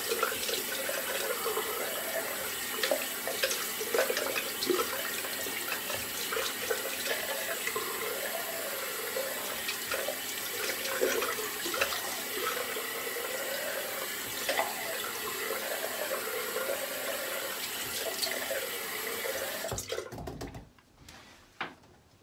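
Bathroom sink tap running cold water that is splashed onto the face to rinse off shaving lather after the final pass. The tap is shut off suddenly near the end.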